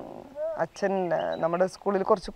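A woman speaking, her voice rough and creaky in places.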